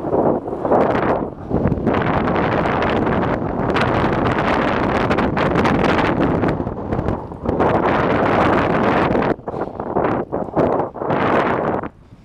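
Wind buffeting the microphone of a camera riding on a moving bicycle, a loud, gusty rush with a few short dips in the second half, cutting off abruptly at the very end.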